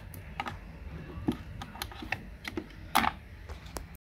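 Irregular light clicks and taps from hands handling hard plastic, with a slightly louder knock about three seconds in.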